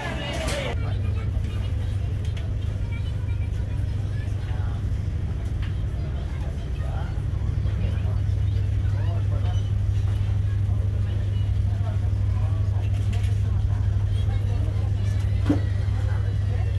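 Steady low drone of a high-speed ferry's engines heard inside a passenger lounge while the ship is underway, with faint passenger voices.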